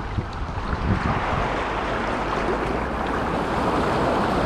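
Steady rush of shallow seawater washing and lapping around people wading, with wind rumbling on the microphone.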